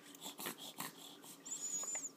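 Faint snuffly breathing and small mouth sounds from a two-month-old baby congested with a cold, with a thin high whistle near the end.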